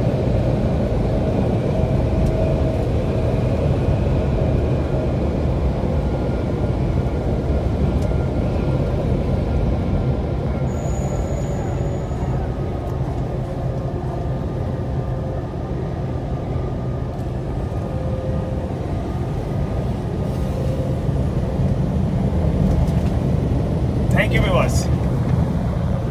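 Steady low rumble of engine and tyre noise inside a truck cab cruising at highway speed.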